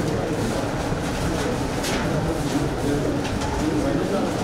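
A bird cooing over the indistinct murmur of a crowd of people talking.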